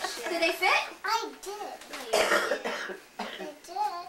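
A young child talking indistinctly, with a cough about two seconds in.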